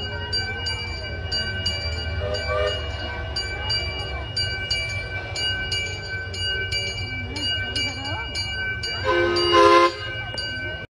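Small 15-inch-gauge live-steam locomotive running with its train, its bell ringing repeatedly at about three strokes a second over a low rumble. About nine seconds in comes a short steam-whistle blast, the loudest sound.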